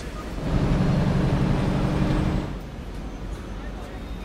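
A bus engine humming steadily over road noise. It is loudest for the first couple of seconds, then eases to a quieter rumble.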